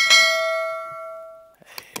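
A single bright bell ding, the notification-bell chime of a subscribe-button animation, ringing out and fading away over about a second and a half.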